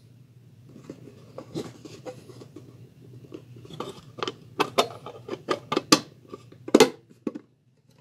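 Metal mess kit skillet and plate being pressed shut by hand into a tight-fitting closed container: a run of light metallic clicks and taps, sparse at first and thicker from about halfway through, with a louder knock near the end.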